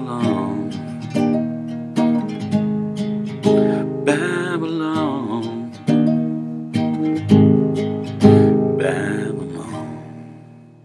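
Nylon-string classical guitar strummed in steady chords, about one strum a second, with a few wordless sung notes over it. The last chord rings on and fades near the end.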